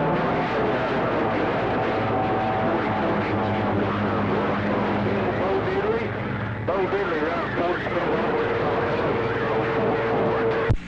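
CB radio receiving a distant station through heavy static: a steady hiss with heterodyne whistles, and a weak voice barely coming through under the noise. The signal changes a little before the seven-second mark, and a different steady whistle runs through the last two seconds.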